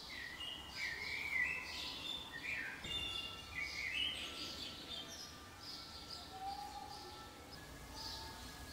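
Birds singing: a run of short, gliding chirps in the first half, thinning out later, over a faint steady background hiss.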